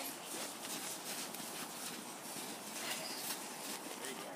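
Faint outdoor hiss with soft, irregular crunches of boots and hands in packed snow.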